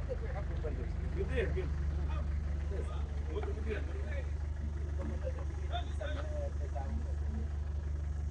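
A car engine idling steadily, with the murmur of voices around it.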